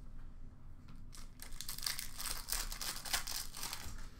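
Trading cards being handled, with a dense run of crinkling and rustling starting about a second in.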